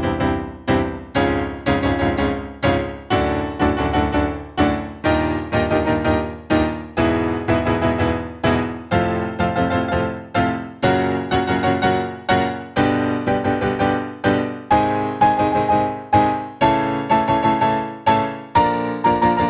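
Digital piano playing major octave chords broken into a triplet rhythm, moving up a half step at a time through the keys; the notes climb steadily in pitch.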